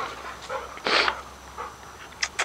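A dog's short breathy huff about a second in, with a fainter one just before it, as the dogs play.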